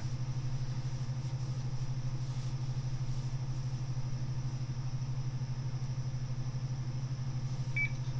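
A steady low electrical hum from the bench electronics, with one short high electronic beep near the end.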